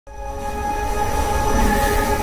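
Logo intro sting: a held chord of several steady tones under a swelling whoosh and low rumble that grows louder toward the end.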